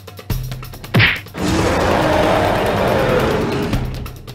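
Added sound effects: a sharp whack about a second in, then a long, loud, rough crash-like effect lasting over two seconds, over faint background music.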